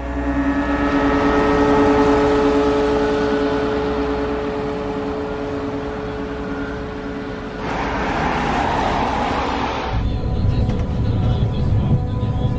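Bus engine humming steadily as the bus draws up and stands, then about two seconds of rushing noise, then the low rumble of riding inside the moving bus.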